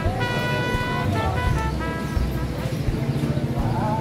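Street traffic with a steady engine rumble and a vehicle horn sounding for about a second near the start, amid voices of people on the street.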